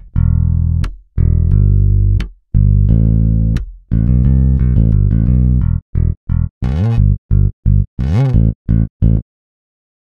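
Ample Bass P Lite II virtual electric bass, a sampled Precision-style bass guitar, playing back a bass line from MIDI. It opens with long held notes, moves into quicker, shorter notes with a few upward slides, and stops about a second before the end.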